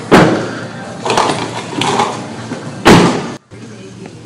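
Car doors of a 2012 Chevrolet Cruze being shut as people get into the front seats: a thump right at the start and a louder, deeper slam about three seconds in, with rustling and a little muffled talk between. After the slam the sound drops suddenly to the hush of the closed cabin.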